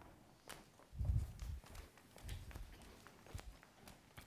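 Footsteps of two people walking across a wooden stage floor: a few faint, soft low thuds with light clicks.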